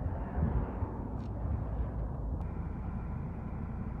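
Low, steady rumble of a Volkswagen Tiguan's 2.0 TDI four-cylinder diesel engine idling with the bonnet open, with a short click a little past halfway.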